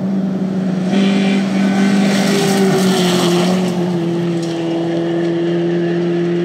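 Hyundai Excel rally car's engine held at high revs on a gravel stage, with a steady hiss of tyres and gravel underneath. The engine note drops slightly about three seconds in and then holds steady.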